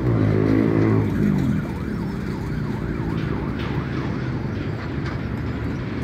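An emergency-vehicle siren wailing, its pitch rising and falling quickly and repeatedly, over steady road-traffic noise.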